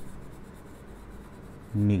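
A marker writing a word on a board. A man's voice starts near the end.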